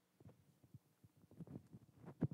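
Near silence, with a few faint soft thumps scattered through it.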